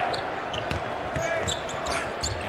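Arena crowd noise from a basketball game, with a basketball bouncing on the hardwood court and brief sneaker squeaks.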